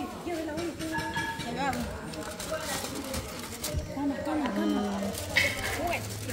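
Indistinct voices of several people talking in the background, with no clear words.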